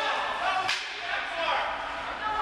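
Two sharp cracks of hockey sticks and pucks striking, about two-thirds of a second apart, over a hubbub of players' voices.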